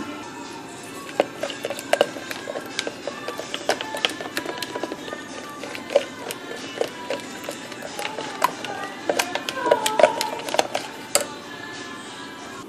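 A silicone spatula stirring a thick egg-yolk and conditioner mixture in a plastic bowl: irregular clicks, knocks and scrapes against the bowl throughout. Faint music plays in the background.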